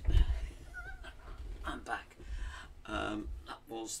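Low bumps and thumps of a man moving back onto an organ bench at the start, followed by his indistinct talking.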